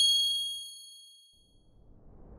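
Logo-sting sound effect: a single bright, bell-like chime ringing at the start, its several high tones fading away over about a second and a half. A soft whoosh begins to rise near the end.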